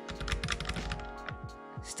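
Loose aftermarket CNC brake lever rattling in its perch as it is wiggled up and down by hand, a rapid series of light clicks. The lever still has up-and-down play even with its pivot bolt tight.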